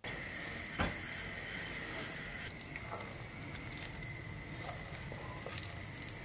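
Steady low hiss from the gas hob where the pans are heating, with one light knock just under a second in.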